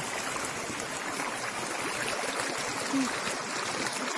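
Shallow stream running steadily over rocks and stones.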